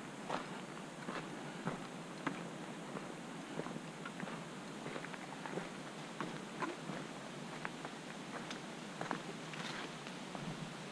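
Footsteps on a dirt forest trail at a walking pace, a step roughly every half second to second, with a brief rustle near the end.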